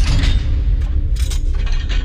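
Designed sound effect of a heavy steel vault door unlocking and swinging open: a deep rumble with mechanical ratcheting and gear clanks, and a few sharp metallic clicks in the second half.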